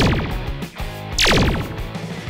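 Two cartoon laser-blaster sound effects, each a quick zap that falls steeply in pitch, a little over a second apart, over background music.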